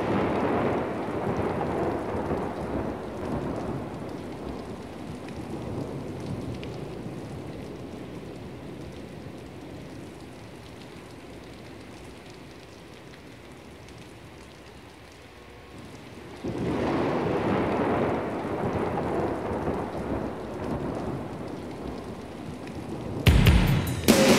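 Recorded thunderstorm: rolling thunder over steady rain, one long peal slowly dying away and a second peal about sixteen seconds in. Just before the end, drums and the band's music come in loudly.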